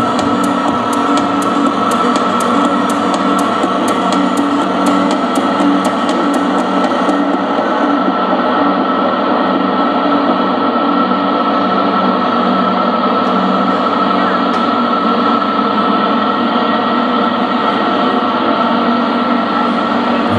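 Electronic music played loud through a PA system: a dense, steady droning texture with a regular high ticking beat that drops out about seven seconds in.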